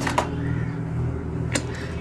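Two sharp computer clicks, one just after the start and one about a second and a half in, over a steady low hum: a search entered on the keyboard and a result clicked with the mouse.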